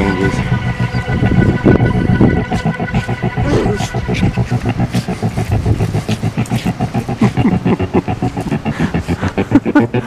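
Two Yorkshire terriers digging fast in loose sand, a rapid run of paw scratches and sand sprays, about five strokes a second.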